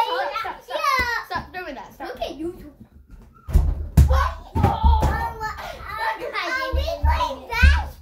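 Young children squealing and shouting excitedly in play, with a basketball bouncing and thudding on the floor several times.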